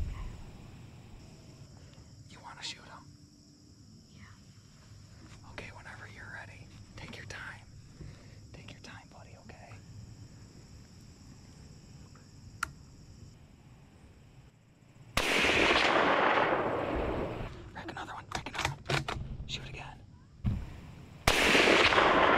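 Low whispering, then a hunting gun fires about 15 seconds in, its report rolling away over a couple of seconds. A few sharp clicks follow as another round is racked into the action, and a second shot goes off near the end. The first shot is a miss; the second hits the buck.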